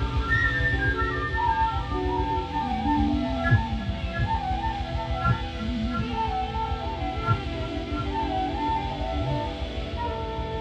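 Live smooth-jazz band playing: a concert flute carries a running melody over bass, guitar and drums, with a few sharp drum hits.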